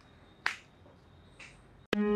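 Isolated sharp footsteps on a hard floor: one clear step about half a second in and a fainter one a second later. Guitar music cuts in at the very end.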